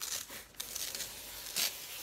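Paper rustling and tearing as a page is ripped from a notepad, with a short louder tear about a second and a half in.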